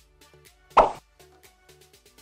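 Background music with a steady beat, and a single short, loud pop sound effect about a second in, of the kind an editor lays under an on-screen caption popping up.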